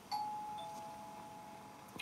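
Two-note ding-dong doorbell chime: a higher note, then a lower note about half a second later, both ringing out and fading over the next second or so.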